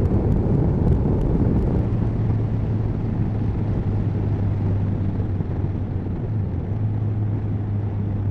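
Motorcycle engine running at a steady cruising speed, with wind and road noise at the bike-mounted camera. A steady low drone firms up about two seconds in.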